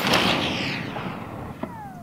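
The long rolling report of a .50 BMG rifle shot fired just before, fading out gradually. Near the end there is a faint click and a short falling whine.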